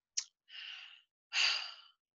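A woman sighing: a short click, then two breaths, the second louder and longer, in a pause of grief.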